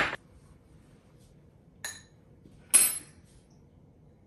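Metal ice cream scoop clinking against the glass container and a ceramic bowl: three sharp knocks, the third and loudest with a short ringing.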